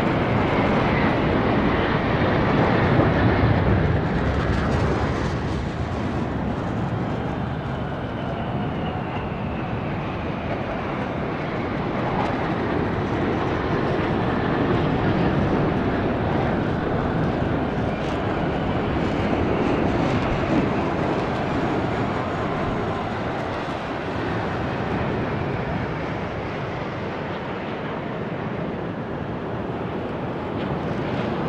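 A formation of J-10 fighter jets flying past: a continuous jet-engine roar, loudest in the first few seconds, with high whines that slowly fall in pitch as they go by.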